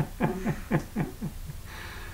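A man laughing: a run of short 'ha' pulses, each falling in pitch, about four a second, trailing off about a second and a half in.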